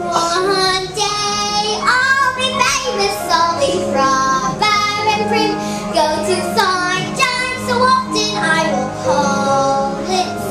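A young girl singing a musical-theatre song solo, with lively changing notes, over sustained low accompaniment notes.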